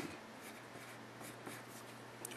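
Pencil writing on paper: faint, short scratching strokes as numbers are written.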